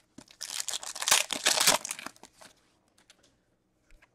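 A 2021 Panini Select UFC trading-card pack being torn open, its wrapper crackling and crinkling for about two seconds, followed by a few faint clicks as the cards are handled.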